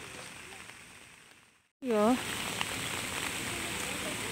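Rain falling, a steady hiss that comes in abruptly about two seconds in after a brief gap of silence. A person calls out a short 'yo' as it starts.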